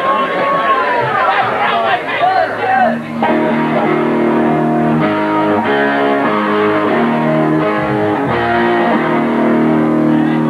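Voices shouting from the audience, then from about three seconds in an electric guitar plays a run of chords through an amplifier, each held for a moment before the next, as between songs at a punk show.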